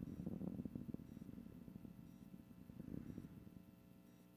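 Faint low rumble with crackle, fading away toward the end, with a faint short high beep about once a second.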